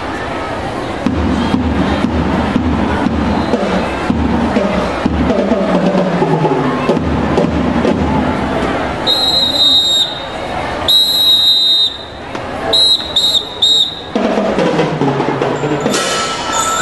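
A drum tapping a steady beat about twice a second, then a drum major's whistle blown in two long blasts followed by four short blasts, the signal cueing a drum and lyre band to start playing.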